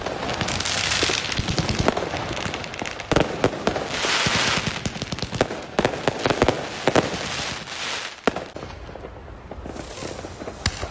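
Aerial fireworks going off: a rapid, irregular series of sharp bangs and pops mixed with crackling bursts, thinning out near the end.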